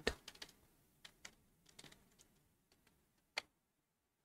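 Faint computer keyboard typing: a scattering of light key clicks, with one louder keystroke about three and a half seconds in.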